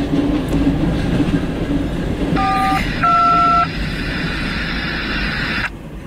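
Freight train of tank cars rolling through a grade crossing, a steady rumble of wheels on rail that drops away suddenly near the end as the last car clears. A horn sounds twice in short two-note blasts about two and a half and three seconds in.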